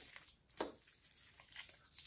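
Faint, sparse clicks and rustles from small hands handling plastic Easter eggs and wrapped candy, with one slightly louder click a little over half a second in.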